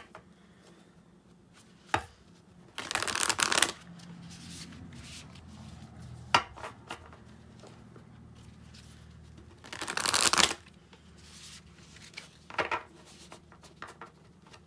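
Wild Unknown Archetypes oracle deck (Kim Krans) being shuffled by hand: two riffles of about a second each, about three seconds in and about ten seconds in, with light taps and clicks of the cards between.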